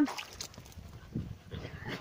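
A dog in the yard making a faint, short low sound, a soft woof or whine, a little after a second in, over quiet yard noise.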